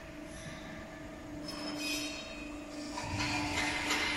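Bubble washing machine running: a steady motor hum from its air blower and water pump, with a high hiss over it that grows louder in the last second.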